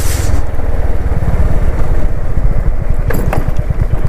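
A motorcycle engine running under way at a steady pace, heard close up as an even low, fast pulsing beat.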